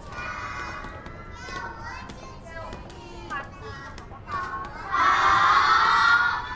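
A group of young children's voices chattering and calling out in a classroom, swelling near the end into a loud shout of many children together.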